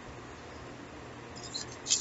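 Tarot cards being shuffled by hand, a quiet soft rustle over room hiss, with a few light clicks near the end.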